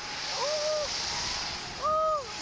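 Rushing wind over the microphone as the Slingshot reverse-bungee ride swings through the air, with two short rising-and-falling yelps from the young riders, one about half a second in and a louder one near the end.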